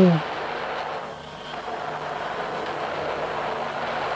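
Steady rushing engine noise from military aircraft in the video's soundtrack. A woman's falling 'ooh' trails off at the very start.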